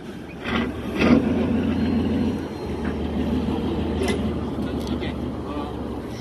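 A motor engine running steadily, setting in about half a second in, with men's voices and short shouts over it.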